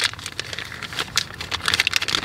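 Clear plastic packaging bag crinkling in quick, irregular crackles as it is worked open by hand.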